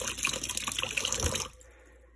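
Kitchen tap running into a stainless steel sink, the stream splashing on a plastic colander, rinsing the rusting solution off metal charms to stop the oxidation. The water is turned off about one and a half seconds in.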